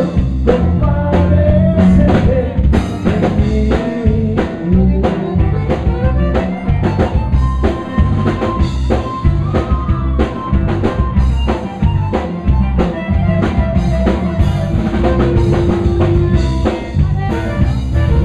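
Live Tejano band playing an instrumental passage: drum kit keeping a steady beat under electric bass and button accordion, with held accordion notes over the rhythm.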